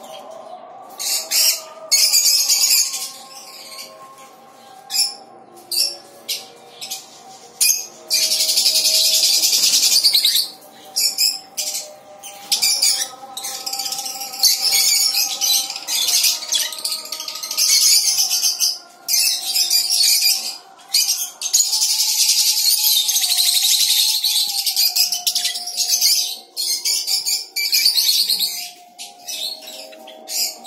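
A colony of caged small parrots, lovebirds and budgerigars, chattering and screeching shrilly in many overlapping bursts, with two longer unbroken stretches of loud flock chatter, one about a third of the way in and one past the middle.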